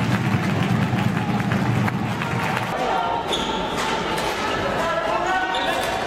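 Live game sound from an indoor floorball match: sharp clicks of sticks and the plastic ball over dense hall noise, with players' voices calling out. About halfway through, the low background noise drops away and short high calls stand out.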